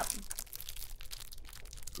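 Plastic wrapper of an individually wrapped lemon bread slice crinkling as it is opened and handled: a run of faint small crackles.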